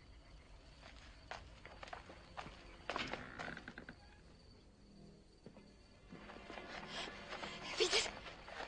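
Faint footsteps and scattered knocks of people moving, in a quiet film soundtrack.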